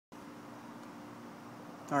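A steady low hum of background room noise with light hiss, and a man's voice starting right at the end.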